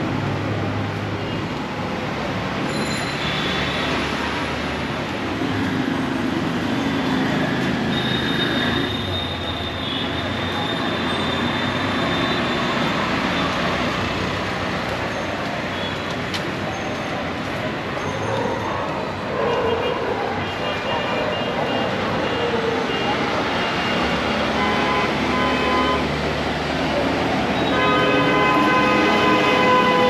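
Steady road traffic noise from passing motor vehicles, with a vehicle horn held for a couple of seconds near the end.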